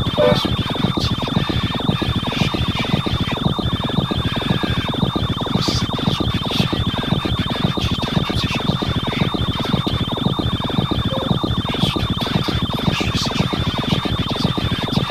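Experimental improvised electronic music: a dense, rapidly pulsing texture under a steady high-pitched whine, with a brief louder blip right at the start.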